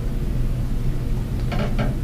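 Steady low room hum with no distinct events, followed near the end by a couple of short vocal sounds.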